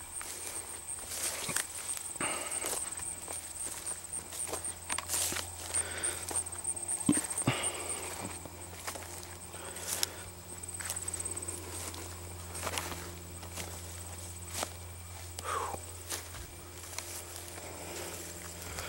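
Footsteps of a person walking through a food plot of oats and leafy turnip plants, with the crop brushing against the legs in irregular steps and rustles.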